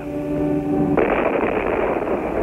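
Cartoon sound effects for the bat's crash: a steady, buzzing tone held for about a second, then a sudden loud noisy crash that carries on.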